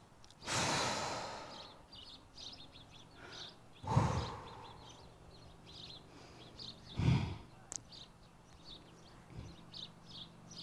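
Three breathy blows of air: a long one about a second in, then shorter, louder ones at about four and seven seconds, over faint repeated high chirps.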